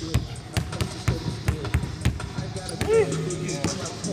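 Basketballs being dribbled hard on a gym court: a quick, even run of bounces, about four a second, that stops a little before the end. A brief pitched sound that rises and falls, the loudest moment, comes about three seconds in.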